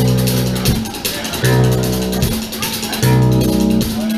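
Live band playing an instrumental passage on acoustic guitar and drum kit, with a sustained chord repeated in even phrases about every second and a half.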